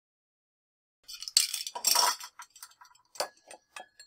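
Dead silence for about a second, then rustling and light clinks of glass as objects are moved about and set down on a tabletop among glass vases.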